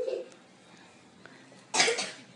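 A single short, loud cough near the end, after a soft spoken "yeah".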